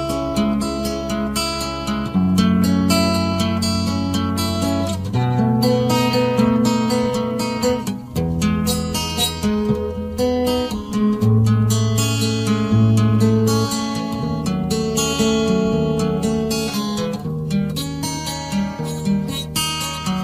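Acoustic guitar music: a strummed and plucked tune over a line of low bass notes that changes every few seconds.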